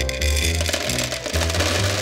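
Jelly beans pouring out of a large glass jar and clattering onto a wooden tabletop, a dense rattle of many small hits. Background music with a steady bass beat plays underneath.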